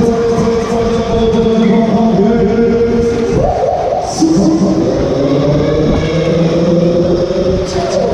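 Loud music with singing from a Musik Express ride's sound system, with long held notes.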